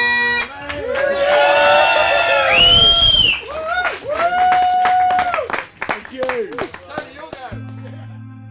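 Bagpipes playing a steady chord that stops about half a second in, followed by people whooping and cheering with long rising and falling 'woo' calls and a scatter of hand claps. Near the end the sound cuts to a steady low hum with soft music.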